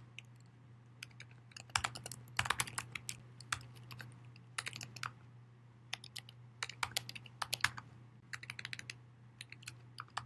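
Typing on a computer keyboard: light keystrokes in short irregular bursts with brief pauses between them. A faint steady low hum runs underneath.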